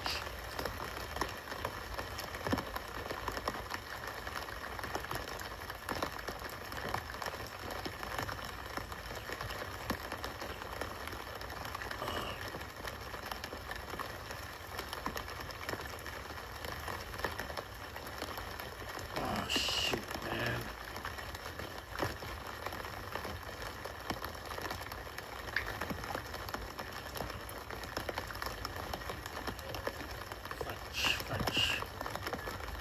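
Steady patter of rain falling on a street, played back from a live-stream video, with a few brief faint noises about two-thirds of the way in.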